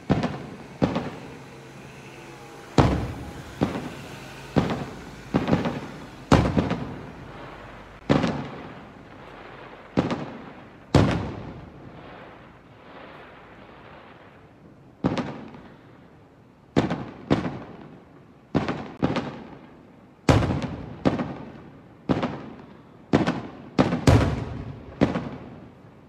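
Aerial firework shells bursting in an irregular series of sharp booms, each fading off after the bang. There is a lull of a few seconds near the middle, then the bursts come thick and fast through the last third.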